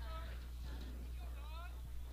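Quiet ballfield background: a steady low hum under faint, distant voices calling out.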